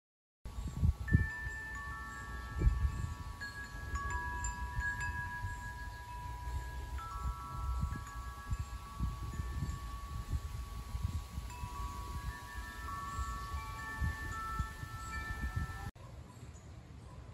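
Metal tube wind chimes ringing in the breeze, starting about half a second in: several long, overlapping tones that fade slowly, one after another, over an uneven low rumble.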